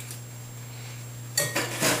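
A metal pastry cutter clinking and scraping against a glass mixing bowl while butter is cut into an oat and brown-sugar crumble topping. A short burst of clatter comes about one and a half seconds in.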